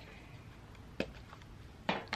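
A sharp plastic click about a second in and another just before the end, over a faint steady background: a small plastic seed container being handled.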